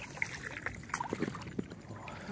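Double-bladed kayak paddle strokes in calm water: the blades dipping in and dripping, with a few small splashes.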